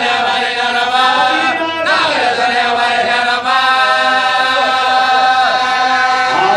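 Men's voices chanting a marsiya, an Urdu elegy, into a microphone, the lead reciter holding long notes with gliding ornaments and a brief break about three and a half seconds in.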